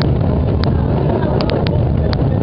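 Hundreds of cajones played together: a dense, loud low rumble of drum strokes, with scattered sharp slaps standing out.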